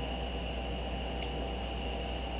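Room tone of a voice recording: a steady low electrical hum and a thin, steady high whine over faint hiss, with one faint click a little over a second in.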